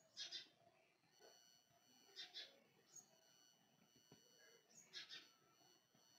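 Near silence with faint, short bird-like chirps, three quick double chirps spread a couple of seconds apart.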